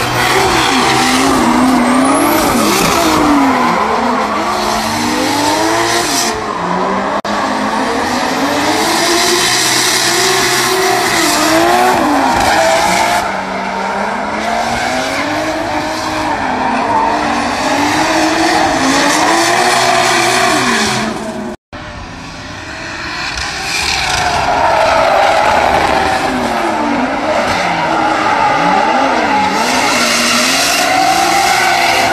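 Drift cars sliding on the track, their engines revving up and down over and over as the drivers hold the slides, with tyres skidding and screeching. The sound cuts out for a split second about two-thirds of the way through.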